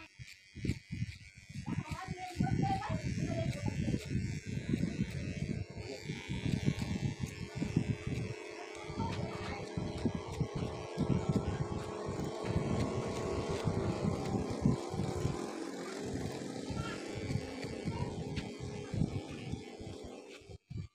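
Electric hair clippers buzzing while trimming a fade, under background music and voices.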